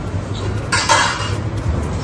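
Steady low hum of commercial kitchen equipment, with one short harsh noise just under a second in.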